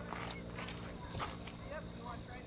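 Faint voices of people talking at a distance, over a steady low hum, with a few brief clicks.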